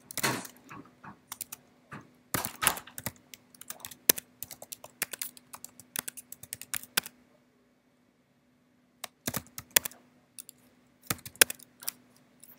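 Typing on a computer keyboard: runs of quick key clicks as a terminal command is entered, with a pause of about two seconds in the middle.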